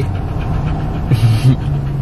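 Steady low hum of a car idling, heard inside the cabin, with a golden retriever panting close to the microphone; a short breathy rush comes about a second in.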